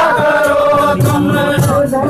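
A group of men's voices chanting a devotional chant together in unison, loud and sustained.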